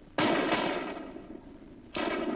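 Hunters' gunshots: two shots a few tenths of a second apart, ringing out and dying away over about a second and a half, then another shot right at the end.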